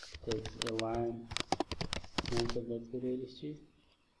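Computer keyboard typing: a quick run of sharp key clicks, mixed with a man's voice talking. Both stop shortly before the end.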